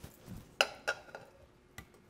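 Butter being scraped off a ceramic plate into a saucepan with a silicone spatula: a soft low thud, then a few light clicks and taps of plate and spatula against the pan.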